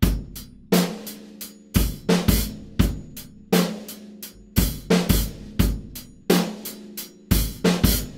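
Acoustic drum kit playing a steady disco groove: bass drum and hi-hat, with snare and floor tom struck together on the backbeat. The hi-hat takes accents, played by slightly loosening the foot on the pedal and digging in with the stick.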